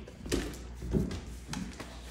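Great Dane puppies' paws and claws knocking on a hardwood floor as they scuffle over a toy: about three short soft knocks.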